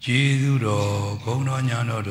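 A Buddhist monk's voice chanting a recitation in a slow, drawn-out monotone. It starts suddenly after a pause, with long held syllables and brief breaks between phrases.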